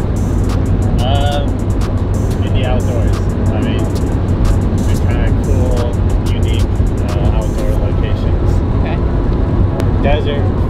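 Open-top Mazda Miata on the move: a steady engine drone and road noise, with wind buffeting the microphone.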